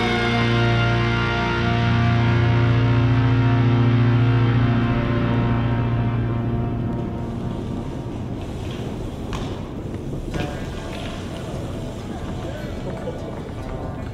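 Rock music with guitar, in steady held chords, fading out in the first half. It gives way to the sound of a BMX bike rolling on concrete, with a few short clicks and knocks between about nine and ten and a half seconds in.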